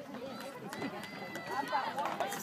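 Spectators in the stands of a youth football game talking and calling out, several voices overlapping and growing louder near the end, with a thin steady high tone lasting about a second in the middle.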